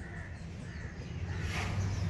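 A few faint bird calls over a low steady hum.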